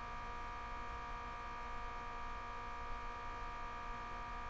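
Steady electrical buzzing hum made of several fixed tones, unchanging in pitch and level.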